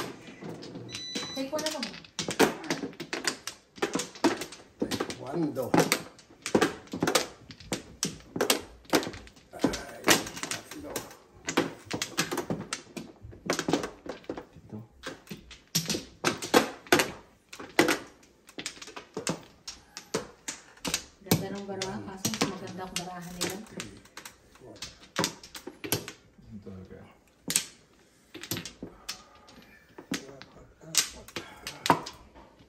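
Mahjong tiles clacking against each other and the table mat as players draw, place and arrange them: a quick, irregular run of sharp clicks and knocks, with voices talking briefly in between.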